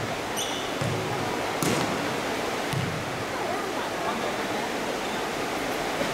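A basketball bounced on the gym floor three times, about a second apart, as the free-throw shooter dribbles before his shot. A brief high squeak comes just before the first bounce.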